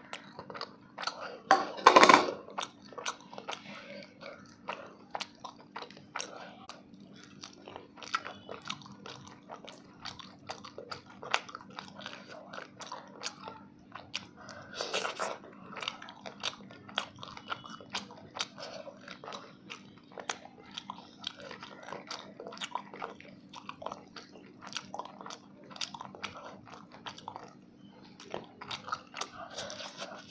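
Close-miked eating: wet chewing, lip smacks and small clicks as rice and fish curry are mixed by hand and eaten, over a low steady hum. A loud sudden clatter comes about two seconds in, and a lesser one about fifteen seconds in.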